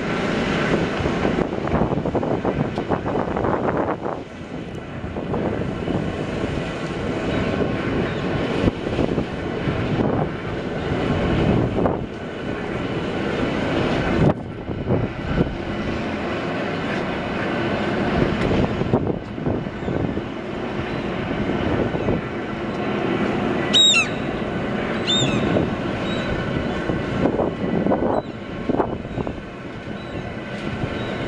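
Lifting machinery of a steel bascule railway bridge running as the leaf moves: a steady mechanical rumble and hum. Two short high squeals come about three-quarters of the way through.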